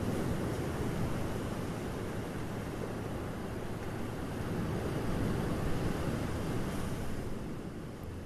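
Ocean surf breaking and washing over rock ledges: a steady rush of water that swells a little past the middle.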